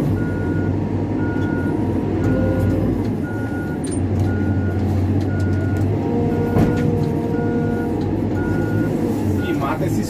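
CAT backhoe loader's diesel engine running with its reverse alarm beeping steadily, one short high beep about every three quarters of a second, heard from inside the cab.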